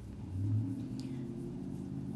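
A car passing outside, heard through a window: a low, steady engine drone that swells about half a second in.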